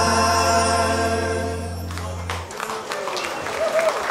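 A live band's closing chord: guitars, keyboard and bass hold one chord while several voices sustain a note together, ending about two seconds in. Audience applause follows.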